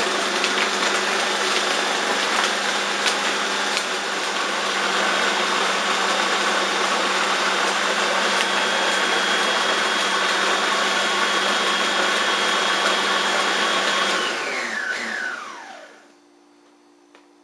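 Electric food processor running steadily, blending vegetables and salt into a wet paste. About fourteen seconds in it is switched off, and the motor winds down with a falling whine.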